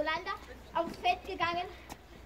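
Speech: a child's voice talking in short phrases.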